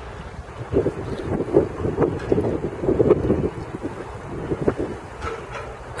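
Wind buffeting the camera's microphone: an uneven, gusting rumble that rises and falls.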